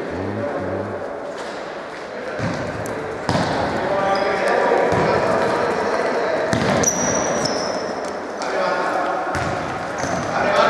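Futsal being played in a large, echoing sports hall: the ball is kicked and bounces on the court floor in a series of sharp knocks, while players' voices call out. A few brief high squeaks come in the middle of the play.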